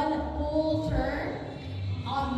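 A woman's voice through a handheld microphone in a sing-song lilt, with music behind it.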